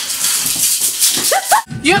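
A hissing, rattling sound from a round hand-held object being shaken or worked with both hands, lasting just over a second. Two short rising squeals follow and end at an abrupt cut.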